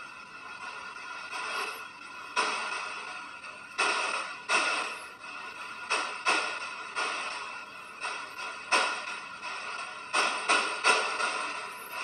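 Spirit box sweeping through radio stations over loud white noise: a steady hiss broken by short, chopped bursts of static and radio fragments, a louder one every second or so.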